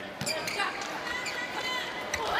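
Volleyball arena ambience: steady crowd noise and voices, with a few sharp knocks of the ball being struck.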